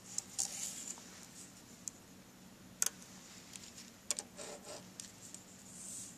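A plastic compass being handled on paper: a few sharp clicks and taps, the loudest just before three seconds in, with short scratches of a pen moving across the paper around half a second in and again just after four seconds in.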